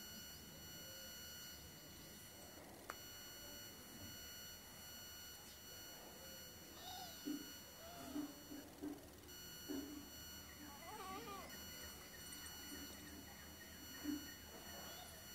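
Near silence: faint background hiss with a steady high electronic whine. About seven to eleven seconds in, a few faint, short, wavering pitched cries come from somewhere in the background.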